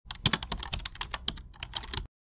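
Computer-keyboard typing sound effect: a fast, irregular run of sharp key clicks, about seven a second, over a faint low hum, starting and stopping abruptly.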